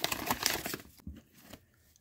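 Paper wrapper of a taped hockey card mystery pack being torn and crinkled open by hand. The rustling dies away about a second and a half in.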